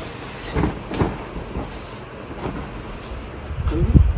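Rustling and soft thuds of a large quilted comforter being handled and spread out, with the loudest thud near the end as it settles.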